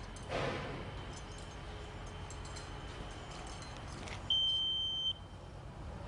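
Stabila DTEC laser receiver giving one steady high beep, just under a second long, about four seconds in, as it picks up the spinning laser's beam. Under it, steady job-site background noise and a short rustle near the start.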